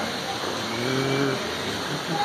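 A single low, drawn-out voice-like call, just under a second long, over a steady background hiss.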